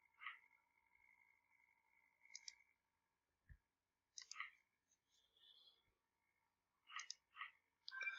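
Faint computer mouse clicks, single and in quick pairs, scattered over several seconds with near silence between.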